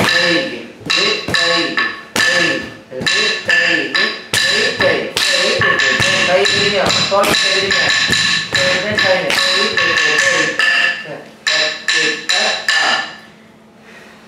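Sollukattu for Indian classical dance: rhythm syllables recited over a fast beat of sharp, ringing strikes keeping time. The beat and recitation stop about a second before the end.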